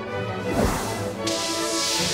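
Orchestral film music with a sharp whoosh about half a second in, followed a little after a second in by a loud, steady rushing hiss laid over the music.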